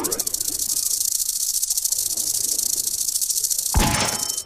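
Online slot game sound effect: a loud, rapid, high-pitched ticking rattle as the fisherman symbol collects the fish cash values and the win counts up. A low thump with short chiming tones comes near the end.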